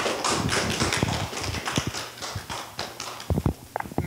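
Applause from a small group, a dense patter of hand claps that thins out and dies away near the end.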